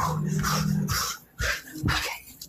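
A person in pain letting out a low, steady moan for about a second, followed by a few short breathy sounds.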